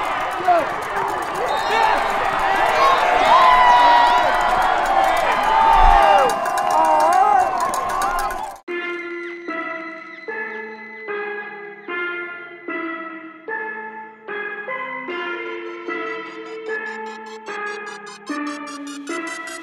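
A football crowd and sideline cheering and yelling for about eight and a half seconds, then an abrupt cut to electronic music: a synth line stepping from note to note in a steady pulse.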